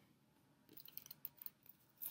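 Faint, light clicks and rustles of tarot cards being handled, a scattered run of them starting just under a second in, over near silence.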